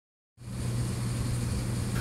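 A steady low motor hum, starting about a third of a second in.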